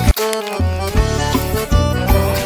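Forró music with accordion over a steady beat, here between sung lines. The bass drops out for about half a second near the start.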